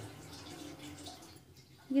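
Faint, wet squishing as a fork pricks pieces of raw chicken in a glass bowl. It dies away in the last half second.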